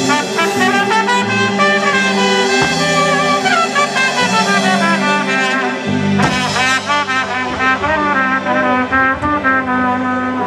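Live trumpet playing a melody over a drum kit and backing band, the music continuous and loud.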